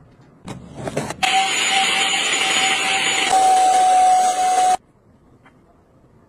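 A small electric appliance motor switches on about a second in, runs steadily with a loud rushing sound and a steady whine, then cuts off abruptly after about three and a half seconds.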